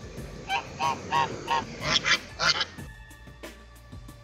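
Domestic goose honking in a quick run of about six or seven calls, the last few loudest, stopping a little under three seconds in.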